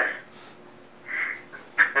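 Short fragments of talk with quiet pauses between them: the tail of a word at the start, a brief murmur about a second in, and the next sentence starting near the end.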